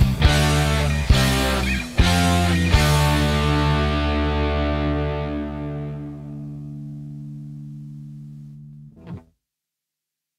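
Distorted electric guitar playing a few sharp strummed chords. The last chord is left ringing and slowly fades over several seconds, the closing chord of a song. The sound cuts off abruptly a little after nine seconds in.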